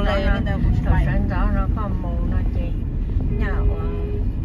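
A person talking in Vietnamese over the steady low rumble of road noise inside a moving car, with a short steady tone near the end.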